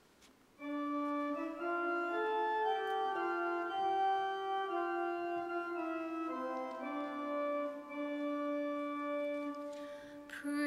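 Church organ playing a short introduction to the sung responsorial psalm, slow held chords that change every second or so, starting about half a second in.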